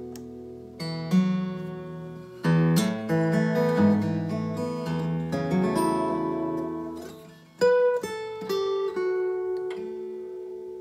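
Acoustic guitar played fingerstyle through an Elite Acoustics A2-5 acoustic monitor with its built-in chorus effect switched on: a handful of plucked notes and chords, each left to ring. A last chord is struck a little past halfway and rings out to the end.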